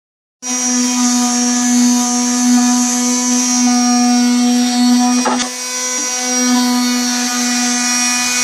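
Handheld electric orbital sander running on a pine board, a steady motor whine that starts just after the beginning, with a short dip and a knock about five seconds in.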